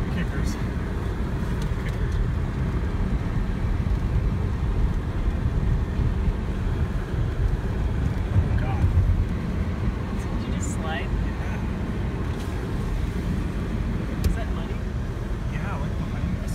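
Nissan Xterra crawling along a rough, rutted dirt trail, heard from inside the cab: a steady low rumble of engine and tyres over the bumps that swells about halfway through. A few brief high squeaks and light knocks come through near the middle and near the end.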